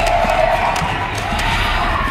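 Film soundtrack: music over a dense, steady rushing noise, with a held tone running through it.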